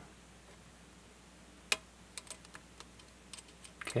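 Faint small metal clicks from a lock pick working the pin stacks of a Rodes 1990 cross lock under tension: one sharper click a little under two seconds in, then a few light scattered ticks.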